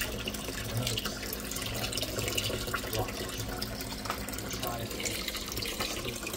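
Ackee and saltfish cooking in a lidded frying pan beside a pot on the boil: a steady bubbling hiss with many light crackles.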